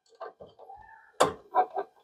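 A few light clicks and scrapes of a stripped copper neutral wire being pushed into a terminal on a breaker panel's metal neutral bar, the sharpest click a little over a second in.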